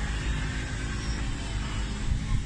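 Steady low rumble with an even hiss, with no distinct events.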